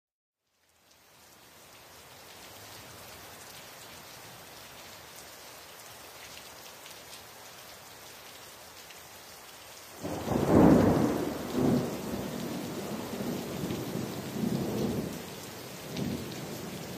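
A large waterfall's falling water, a steady rushing hiss that starts about a second in. About ten seconds in it turns louder, with an uneven low rumble that swells and eases several times.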